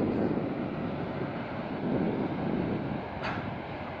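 Wind rumbling on the microphone over the steady rush of a wide, fast-flowing river.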